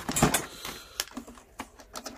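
Handling noise on an old wood-cabinet television set: a louder knock near the start, then several light, sharp clicks as a hand moves over and onto its control panel.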